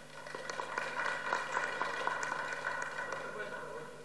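Applause from the deputies in a parliamentary chamber: many hands clapping that swell in the first second and slowly die away toward the end.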